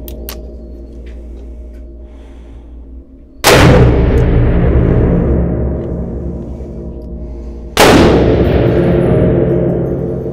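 Two 454 Casull shots from a Smith & Wesson 460 Magnum revolver, about four seconds apart. Each is a sudden loud report that rings on and fades over a few seconds in the reverberant indoor range.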